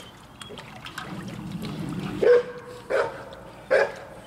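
A dog barking: three loud barks about three-quarters of a second apart, starting about two seconds in.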